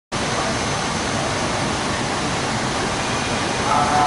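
Steady rushing noise with no distinct events. Faint voice-like tones come in near the end.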